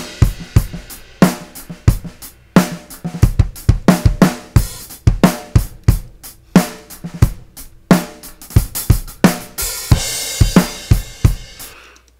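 Multitrack recording of an acoustic drum kit played back: a groove of kick, snare and hi-hat with crash cymbals near the start and about ten seconds in, stopping at the very end. All the mics are open, with a small amount of room reverb added from the overhead mics.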